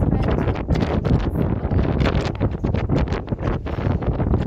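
Strong wind buffeting the camera microphone, a loud, gusty rumble.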